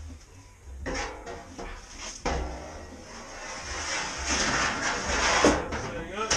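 Aluminum roof panel being handled and lifted onto a UTV's roll cage: knocks and scrapes about one second in and again about two seconds in, then a longer scraping rush that builds toward the end. Faint music plays underneath.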